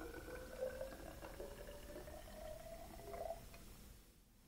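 Water pouring into a glass graduated cylinder, faint, with a pitch that rises steadily as the cylinder fills. The pour stops about half a second before the end.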